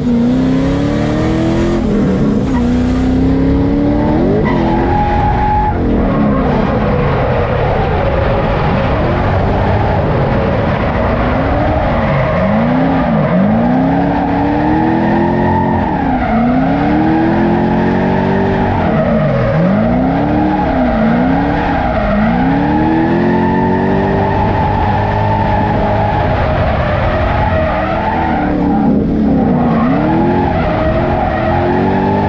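A drift car's engine, heard from inside the cabin, revving up and dropping back over and over while its tires squeal steadily through long slides.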